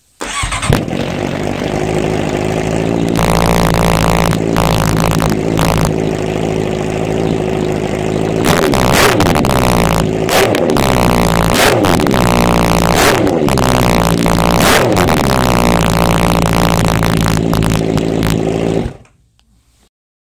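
Honda CB650F's inline-four engine firing up through a Yoshimura R11 exhaust and settling into a steady idle. It is revved repeatedly through the middle, drops back to idle, and is shut off suddenly near the end.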